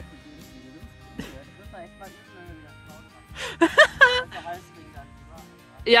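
Quiet background music with steady held tones, broken about halfway through by a short vocal sound that rises and falls, and a spoken "ja" at the very end.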